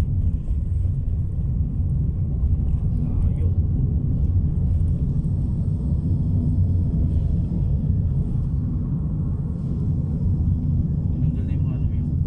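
Steady low rumble of a car driving, heard from inside the cabin: engine and road noise.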